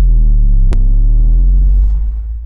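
Loud, deep bass drone of a logo-sting sound effect, held steady with a single short click about three-quarters of a second in, beginning to fade at the end.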